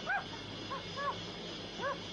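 About four short, high-pitched yelps in quick succession over background music, each a brief rise and fall in pitch.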